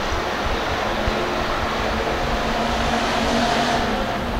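Hobby stock race cars' V8 engines running together as the pack races around a dirt oval: a steady engine din that grows a little louder in the second half.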